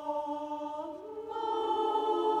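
Mixed choir singing a cappella, holding a sustained chord that moves to a new, fuller and louder chord just over a second in.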